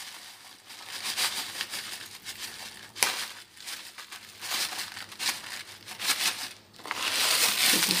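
A paper pouch of granola crinkling and crackling as it is tipped and shaken over a bowl, pouring granola out, with a sharp crackle about three seconds in and a louder rush of crinkling near the end.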